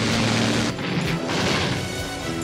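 Crashing and smashing sound effects in several waves over music, starting about two-thirds of a second in.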